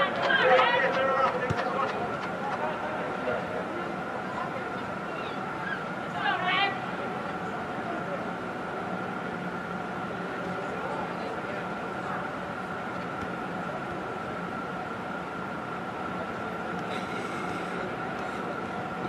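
Indoor soccer dome ambience: players' shouts across the pitch in the first second or so and again about six seconds in, over a steady hum with a faint high tone running throughout.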